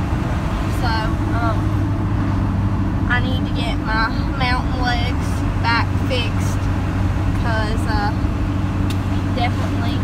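Steady low drone of a truck's engine and road noise heard from inside the cab while driving, with indistinct voices talking over it.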